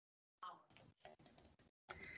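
Faint computer keyboard key presses: a handful of soft clicks starting about half a second in.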